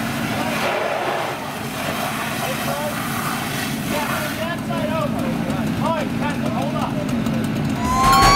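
Fireground noise: a fire engine's motor running steadily, with indistinct voices of firefighters over it.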